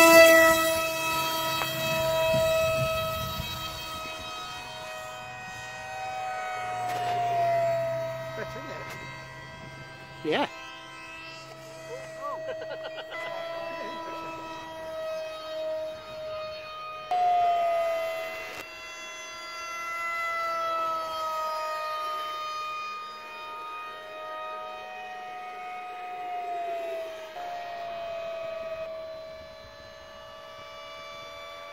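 Electric motor of a foam radio-controlled F-35 model jet whining at high throttle, its pitch sliding up and down as the model flies passes; loudest right at the start. A single sharp click about ten seconds in.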